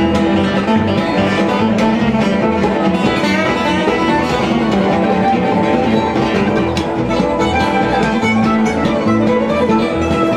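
Live bluegrass band playing an instrumental break, acoustic guitars strumming a steady rhythm, with no singing.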